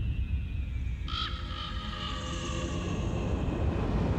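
Dream-sequence soundtrack: a deep, steady rumble under thin high tones that slide slowly downward, with a sudden bright shimmering accent about a second in and a higher tone entering about halfway through.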